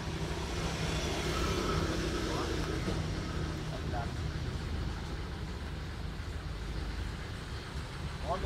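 Steady low hum of vehicle engine noise and street traffic, with brief faint voices a couple of times.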